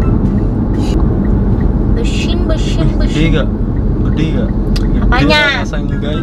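Steady low rumble of a car's cabin, under talking. A raised, high voice rises and falls near the end.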